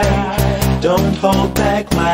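Dance music from a DJ mix: a steady four-on-the-floor kick drum, a little over two beats a second, under a melodic lead line.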